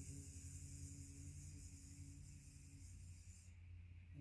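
A woman humming one steady low note on a long exhale, a bumblebee breath (bhramari), with a hissy buzz over it, fading out about three seconds in.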